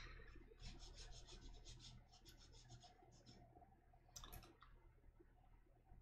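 Faint, quick strokes of a brush pen's tip scratching across sketchbook paper as short hatching lines are painted, several a second, with a slightly louder pair of strokes a little past four seconds in.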